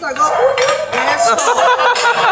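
A metal hibachi spatula clinking and scraping on a steel teppanyaki griddle, a few sharp metallic clinks, with voices at the table underneath.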